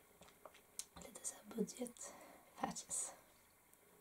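A young woman's soft, half-whispered speech, broken by small mouth and breath sounds, with a brief hiss a little before the three-second mark.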